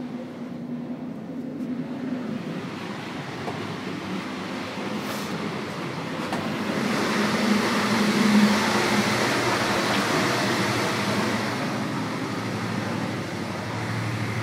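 Running noise of a City Night Line sleeper coach on the move, heard from inside: a steady rolling rumble that grows louder about halfway through.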